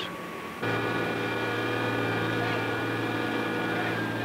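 Flight-line ground support equipment running steadily under a B-52: a low engine drone with several high whining tones over it. It starts abruptly about half a second in.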